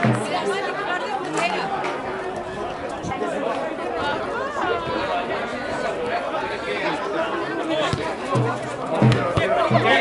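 Several voices overlapping in steady chatter, with calls and shouts from players and spectators at a football match.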